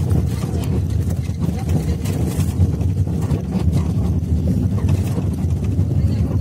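Steady low rumble of a moving vehicle, engine and road noise heard from on board, with wind buffeting the microphone.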